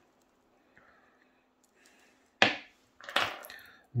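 Small metal pocket items handled on a wooden tabletop: a sharp clack about two and a half seconds in, then a short clattering rattle just after.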